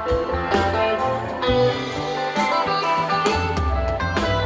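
A live rock band playing an instrumental passage, heard from the audience: electric and acoustic guitars and keyboards over a moving bass line and drums.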